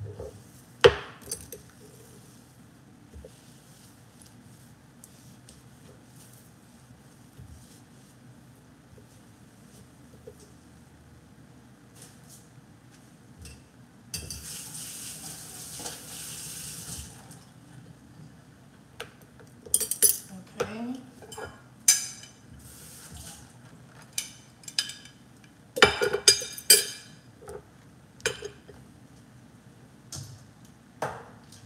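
Kitchen handling noises: scattered clinks and knocks of dishes and utensils set down on a stone counter, clustering in quick runs in the second half. About halfway through comes a steady hiss lasting about three seconds.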